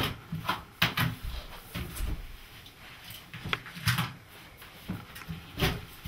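Scattered light clicks and knocks of hands handling a metal shower arm while plumber's tape is pressed onto its threads, with low handling rumbles between them.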